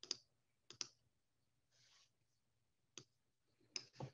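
Near silence with a low steady hum, broken by four faint, sharp clicks spaced unevenly: two in the first second, two near the end.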